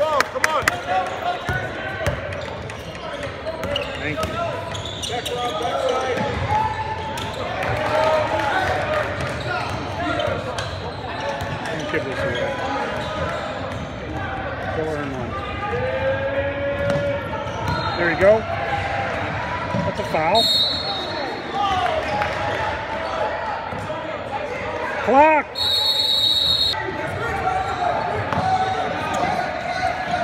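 Basketball game sounds in a large gym: a ball bouncing on the court and the voices of players and spectators. A referee's whistle blows twice, a short blast about twenty seconds in and a longer one about five seconds later.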